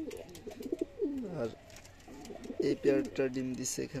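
Domestic racing pigeons cooing in a loft: low, gliding coos, one falling away about a second in and more clustered near the end.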